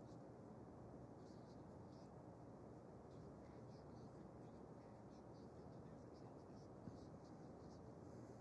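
Near silence, with the faint, irregular scratching of a paintbrush's bristles dabbing oil paint onto canvas.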